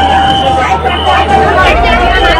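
Indistinct voices of several people talking over a steady low hum and a held steady tone.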